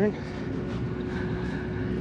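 Steady low drone of an engine running, with a faint constant hum over it.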